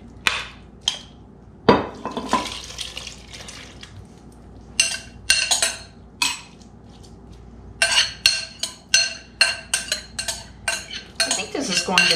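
Chunky pineapple-and-pepper sauce being poured from a glass bowl into a slow cooker crock, with a knock against the rim early on, then a metal spoon scraping and clinking against the bowl repeatedly, two or three strikes a second toward the end.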